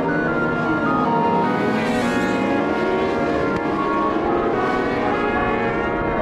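A pack of race motorcycles revving and accelerating away from a standing start, with music mixed over them.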